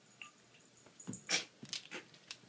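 Boxer puppy close to the microphone, making a few short noises about a second in, the loudest just after.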